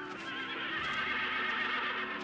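A horse whinnying: one long, quavering call that lasts nearly two seconds.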